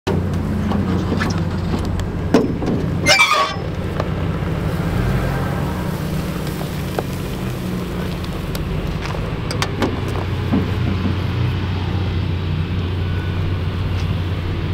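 Metal latches on an enclosed cargo trailer's rear ramp door being worked open: a sharp clank about three seconds in and a few lighter clicks later. Under it runs a steady low engine-like drone.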